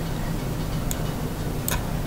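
Two computer mouse clicks, about a second apart, over a steady background hiss.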